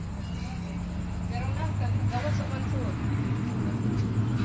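A motor vehicle's engine running nearby, a low steady hum that grows louder about a second and a half in, with indistinct voices in the background.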